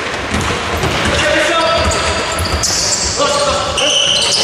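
Basketball being dribbled on a wooden court floor during a fast break, a run of irregular low thumps, with players' voices echoing in a large hall.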